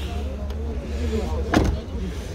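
A car door, a Daewoo Nexia's front door, shut once about one and a half seconds in, with a single sharp knock. A steady low rumble and faint voices run underneath.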